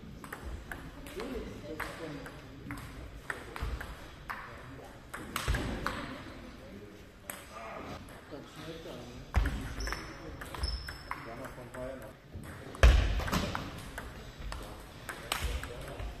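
Table tennis ball clicking back and forth on the table and the rackets during rallies, with the echo of a sports hall. A heavy thump about 13 seconds in is the loudest sound.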